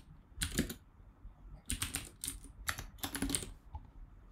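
Typing on a computer keyboard: short runs of keystroke clicks, one about half a second in, then a longer run through the second half.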